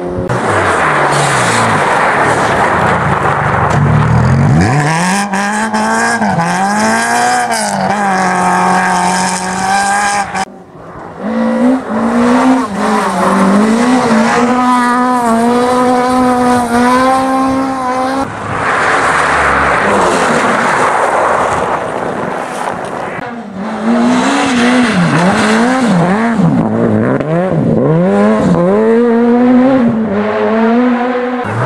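Rally cars driven flat out on a snow stage, engines revving high and dropping again and again as each car passes. Several cars are heard in turn, with abrupt cuts between them.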